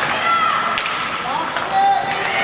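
Youth ice hockey play: sharp cracks of sticks striking the puck and ice, one about a second in and a louder one near the end, over players' and spectators' voices calling out in the rink.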